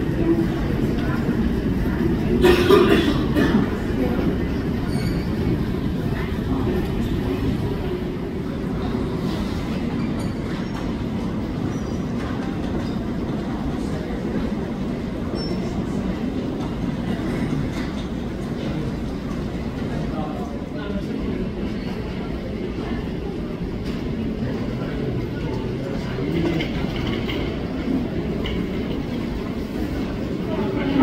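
Steady low rumble of airport ambience, with faint voices now and then.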